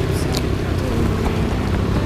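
Steady outdoor background noise, heaviest in the low end, with no clear single event.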